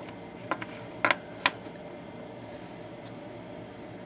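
A few sharp clicks and taps of a AA-size battery being handled in and around a battery holder. The loudest is a double click about a second in, with another about half a second later, over a steady low hum.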